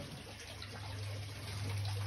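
Water trickling steadily in a greenhouse aquaponics system, with a steady low hum underneath, growing a little louder in the second half.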